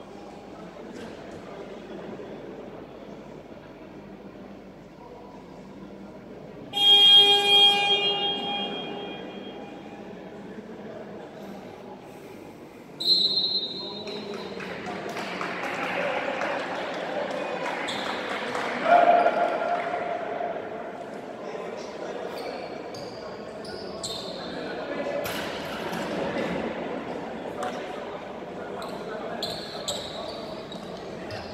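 Sports-hall buzzer sounds once for about a second and a half, marking the end of the timeout. Later a sudden sharp high sound, then voices, a basketball bouncing and short clicks and squeaks on the hardwood court, echoing in the hall.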